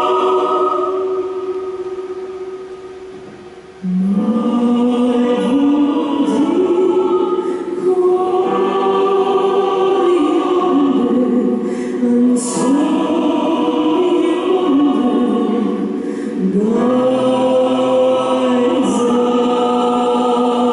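Choir singing slow, sustained phrases. A held chord fades away over the first few seconds, then the voices come back in strongly about four seconds in and move through long held notes, phrase after phrase.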